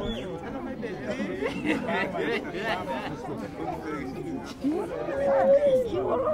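Several people talking at once in overlapping chatter, with one voice drawing out a long note about five seconds in.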